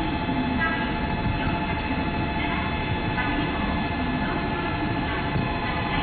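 Steady ambient noise of a large railway station: a continuous low rumble with a constant hum of several steady tones, and faint distant train and voice sounds mixed in.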